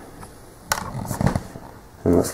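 Handling noise: one sharp click about two-thirds of a second in, followed by a few softer taps and rustling.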